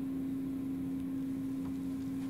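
Steady low hum over faint hiss: background room tone with no speech.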